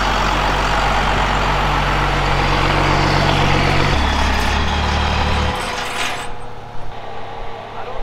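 An old tow truck's engine running loud and steady with a low rumble. About four seconds in the note drops lower, and the engine stops about a second and a half later, leaving small clicks.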